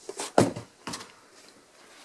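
Handling noise from boxed fireworks packages being set down on a pile: three or four short knocks and rustles within the first second, the loudest about half a second in.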